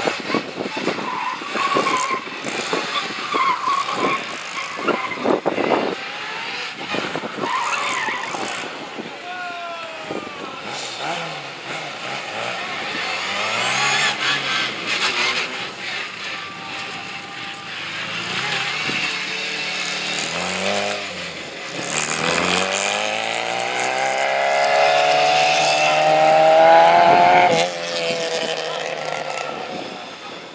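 Small stunt car (a Mini) on a gymkhana run. Over the first several seconds its tyres squeal and skid through sharp turns. After that the engine revs up and down repeatedly, then climbs in one long rising rev for about five seconds and cuts off sharply near the end.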